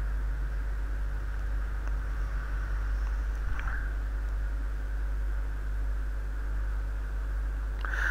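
Steady background noise of the recording: a low hum with a constant hiss, unchanging throughout.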